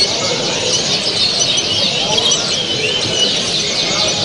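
Many caged songbirds, the canaries, goldfinches and hybrids of a bird show, chirping and trilling at once in a steady, dense chorus.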